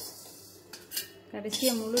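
Stainless steel bowls clinking and scraping as they are handled, with a short metallic clatter about a second in.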